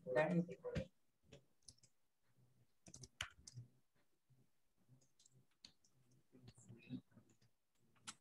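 Typing on a computer keyboard: irregular, quick key clicks as a sentence is written. A brief voice in the first second is the loudest sound.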